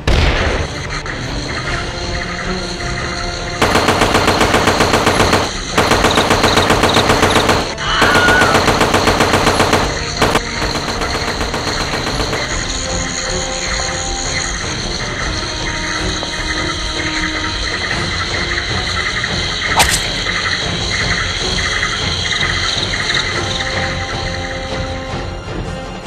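Three bursts of rapid automatic gunfire, each about two seconds long, over dramatic background music that carries on after the shooting stops.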